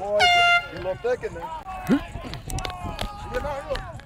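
A short air horn blast a fraction of a second in, followed by players' voices talking in the background.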